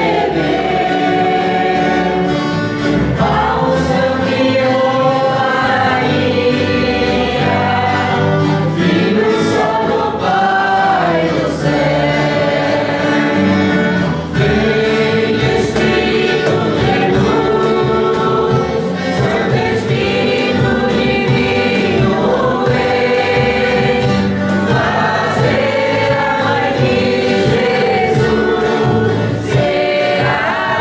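A church choir singing a hymn with instrumental accompaniment, continuous and loud.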